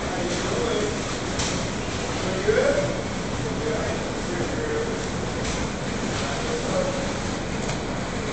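Indoor swimming pool hubbub: a steady noisy background with distant children's voices and calls, one call louder about two and a half seconds in.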